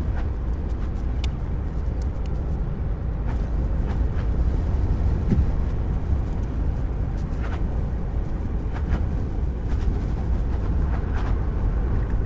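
Steady road and tyre rumble inside the cabin of a Tesla electric car driving at around 35 mph, with no engine note. A few faint light ticks come through over the rumble.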